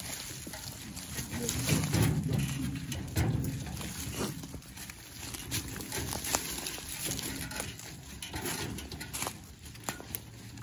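Footsteps and the wheel of a metal wheelbarrow being pushed through dry leaf litter, an irregular crackling with a low rumble about one to three seconds in.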